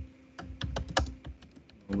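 Typing on a computer keyboard: a quick run of keystrokes about half a second in, then it trails off.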